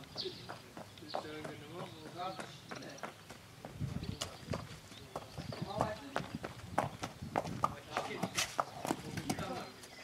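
A horse's hooves clip-clopping at a walk on hard, dry ground as it is led in hand: a loose, uneven series of knocks. Faint voices talk in the background.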